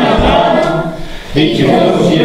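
A group of voices singing together, a choir of scouts and guests, with a brief break a little over a second in before the singing picks up again.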